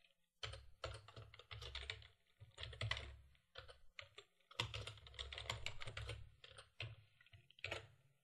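Quiet typing on a computer keyboard: quick runs of keystrokes with short pauses between them.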